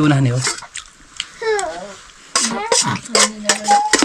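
Voices talking in short phrases, with a few short clicks between the words.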